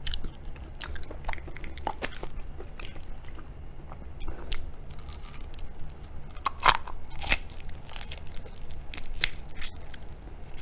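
Close-up biting and chewing of a raw tiger prawn, its shell and flesh giving irregular sharp clicks and snaps; the loudest snap comes about two-thirds of the way through. A steady low hum lies underneath.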